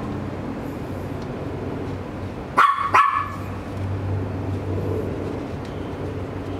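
A dog barking twice in quick succession, short sharp barks about two and a half seconds in, over a steady low hum.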